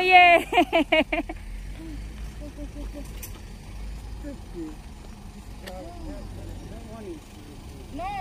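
A person laughing loudly for about a second, then faint distant voices over the steady low rumble of a car engine idling.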